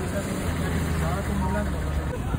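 Engine of an off-road vehicle running while it drives across desert sand: a steady low drone.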